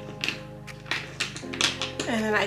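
Background music with soft sustained chords, and about six light taps or clicks over it, the loudest near the end.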